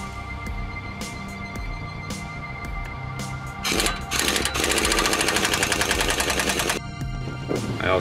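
Pneumatic impact wrench hammering on the forcing screw of a tie rod end puller, pressing the tie rod end's tapered stud out of the steering knuckle: a short burst a little before halfway, then about two seconds of steady rapid rattling that stops sharply, over background music.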